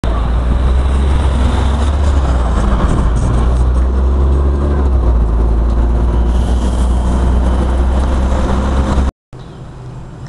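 Diesel city bus engine running as the bus drives through the junction, with a heavy low rumble. The sound cuts off suddenly near the end and gives way to much quieter street background.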